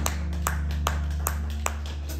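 Drummer tapping a steady beat, about two and a half sharp taps a second, over a steady low hum from the band's amplifiers.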